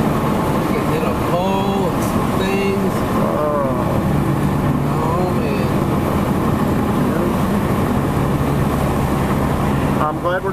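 Steady road and engine noise inside a car cruising at highway speed, with a low hum running throughout. A few short, indistinct voice sounds come in the first half.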